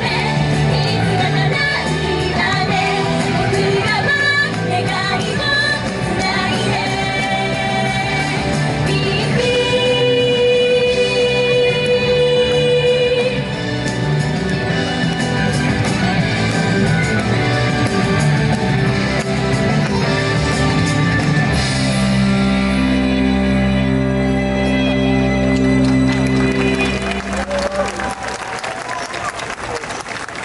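Japanese idol pop song with female vocals played loud over a PA, closing on long held chords that die away near the end.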